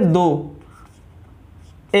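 Marker pen writing on a whiteboard: faint short scratchy strokes in the quiet gap between a man's spoken words, which trail off early and start again near the end.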